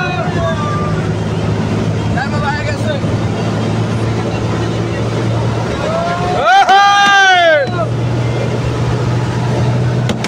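Steady engine drone of a vehicle travelling at highway speed. About six and a half seconds in, a loud vehicle horn sounds for just over a second, its pitch rising and then falling.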